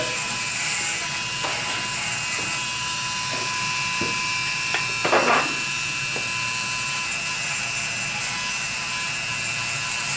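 Small handheld rotary carving tool running at a steady high whine, its tiny burr texturing the edge of a thin wooden shell carving. A short louder sound comes about five seconds in.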